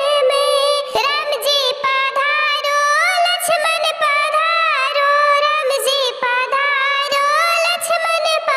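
A very high-pitched, cartoon-like voice singing a devotional folk song to Lord Ganesh, its melody gliding from note to note without a break.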